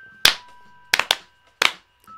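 Hand claps, four sharp claps under two seconds, over a music jingle with thin held tones.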